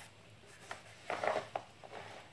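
Pages of a newsprint comic book being turned by hand: a light tick, then a brief paper rustle about a second in, followed by a couple of soft clicks.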